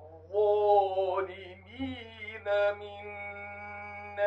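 A man reciting the Quran in melodic tajweed, drawing out long held notes that waver gently, with short pauses for breath between phrases. A steady low hum sits beneath the voice.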